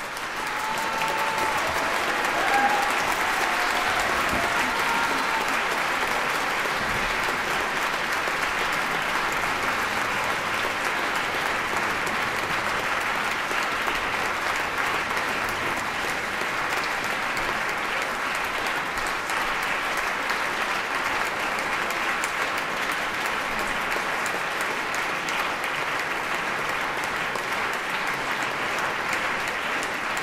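Theatre audience applauding at the end of a performance. The applause swells over the first two seconds and then holds steady.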